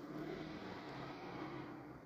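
Quiet outdoor background: a faint, steady low hum over a soft even hiss, with no sharp events.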